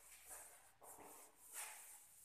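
Faint swishes of a felt duster wiped across a chalkboard, about three strokes in two seconds.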